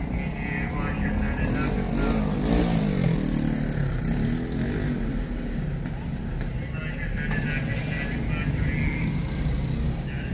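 Street traffic: motor vehicle engines passing close by, their pitch rising and falling twice, over a steady low rumble.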